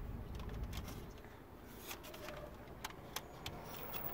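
Faint handling of a plastic dashboard trim bezel: a few light, separate clicks and rustles over a low, steady background rumble.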